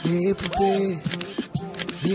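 Several sharp camera-shutter-like clicks over a bending, voice-like pitched sound and background music, an edited transition sound effect.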